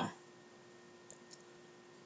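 Quiet room tone with a faint steady hum, broken by two faint short clicks a little over a second in.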